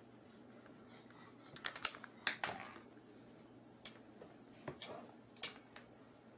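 Hard black plastic compost tumbler panels being handled and knocked together: a quick cluster of sharp clicks and knocks about two seconds in, then a few single clicks later on.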